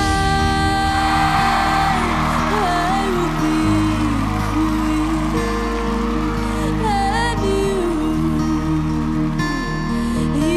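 A solo singer holding long, wavering notes in a slow ballad, over strummed acoustic guitar and sustained low bass notes that shift twice.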